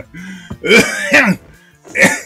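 A man's voice doing an exaggerated mock sneeze in imitation of a cute girlish sneeze ('ehyan'): a short hum, then one loud burst just past the half-second.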